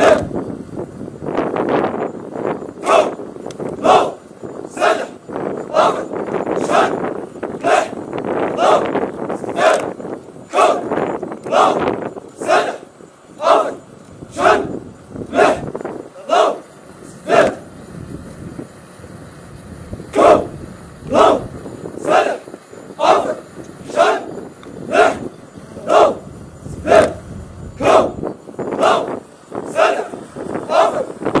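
Massed boots of a marching formation stamping on the ground in unison, a sharp stamp about once a second. A crowd of voices, plausibly the marchers chanting, runs under the stamps for roughly the first half, then fades.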